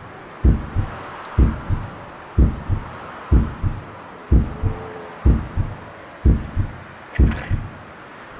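Edited-in heartbeat sound effect for suspense: a low double thump, about once a second, repeating evenly.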